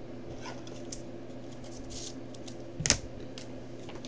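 Light clicks and taps from hands handling cards on a tabletop, with one sharper tap about three seconds in, over a steady electrical hum.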